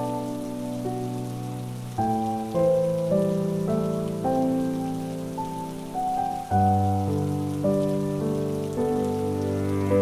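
Slow, calm cello and piano music over a steady patter of rain. Fresh chords come in about two seconds in and again past six seconds, each fading away slowly.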